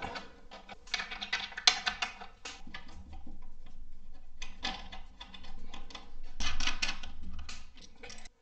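Steel nuts being spun on by hand over washers onto carriage bolts: spells of small metallic clicks and rattling, the first about a second in, then two more later on.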